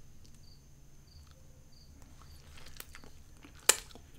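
Lipstick being applied to the lips close to the microphone: faint rubbing and small mouth sounds, with one sharp click near the end.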